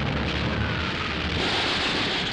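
Continuous rumbling, hissing roar of bombardment on an old film soundtrack, with the hiss growing stronger in the upper range in the second half.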